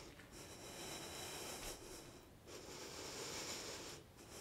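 A person's slow breathing close to a clip-on microphone: two long breaths of about two seconds each, with a short pause between them.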